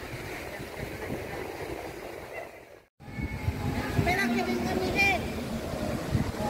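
Outdoor street ambience with a steady low rumble of wind on the microphone. After a sudden break about three seconds in, passers-by can be heard talking over it.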